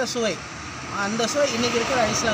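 A man talking, with traffic noise from a passing vehicle rising behind his voice in the second half.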